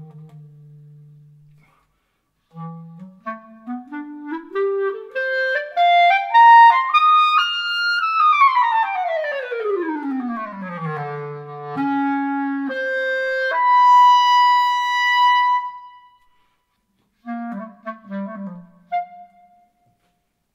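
Unaccompanied clarinet. A low note dies away, and after a short pause the clarinet climbs in steps from its low register to a high one over several seconds, then slides smoothly back down. It goes on to a long held high note, pauses, and plays a short closing phrase.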